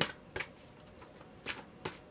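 Tarot deck being shuffled in the hands: three short, crisp card snaps, the last two close together.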